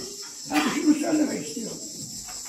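A person's voice speaking for about a second, over the steady high chirring of crickets.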